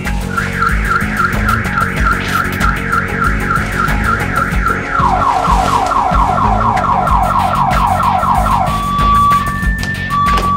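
Electronic multi-tone alarm siren of the car-alarm kind, cycling through its patterns: a fast warbling tone at about four or five warbles a second, switching about halfway to rapid falling sweeps, then to steady long beeps near the end. It plays over background music with a low beat.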